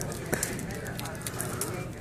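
Dry breakfast croissant sandwich being torn apart by hand, its crust crackling in several short sharp crunches; a croissant that is not supposed to be crunchy, a sign it has dried out. Restaurant chatter underneath.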